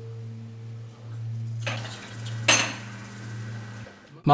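A sharp clink of tableware, over a steady low hum. A rustle comes just before it, a little before halfway.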